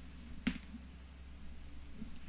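Hands laying a strip of double-sided tape off its roll along a cardstock edge: one sharp click about half a second in, then faint handling sounds, over a low steady hum.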